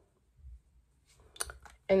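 Mostly quiet, with a faint thud about half a second in and a few short, sharp clicks around a second and a half in, then a woman starts to speak near the end.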